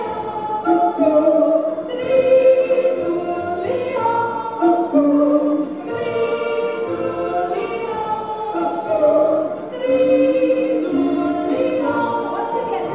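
Two women singing a Swiss folk song in two-part harmony, with accordion accompaniment, in held notes that step up and down.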